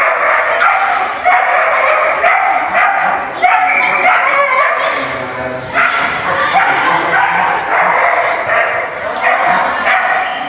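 A dog barking over and over, with hardly a break, during an agility run.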